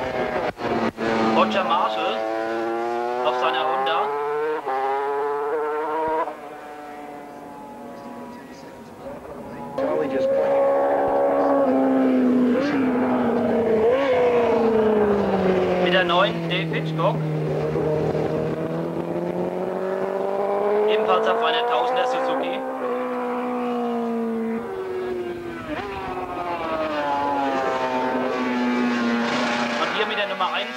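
Racing motorcycle engines at high revs going past one after another, their pitch rising and falling as the riders change gear and as each bike passes. There is a quieter stretch about a quarter of the way in.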